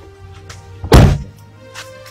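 A car's driver door pulled shut from inside, one heavy thud about a second in, over steady background music.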